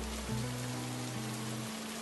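Steady rain falling, an even hiss, with a few low, slow held music notes underneath.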